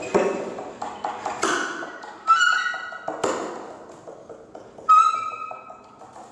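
Free-improvised alto and tenor saxophone duo: a string of short, sharp attacks that each die away, with a brief high note about two seconds in and another near the end.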